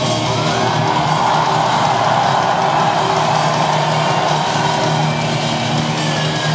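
A live rock band playing loudly through a PA, with guitars and bass holding steady notes. A crowd screams and cheers over it, loudest through the middle.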